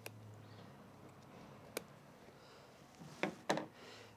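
Scissors snipping through the cloth of a seat heater pad, with hands handling the fabric: a few faint, sharp clicks, one clearer snip near two seconds in, and two short louder sounds near the end.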